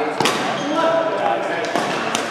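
Voices talking in a large, echoing badminton hall, with two sharp knocks about a fifth of a second in and near the end.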